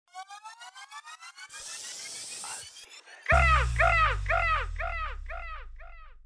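Electronic intro sound design: a pulsing synth tone sweeping upward, a brief hiss swell, then about three seconds in a deep bass hit with a falling synth chirp that repeats about twice a second, echoing and fading away.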